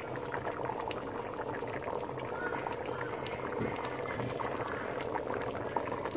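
A pot of stew peas boiling, a steady bubbling with many small irregular pops.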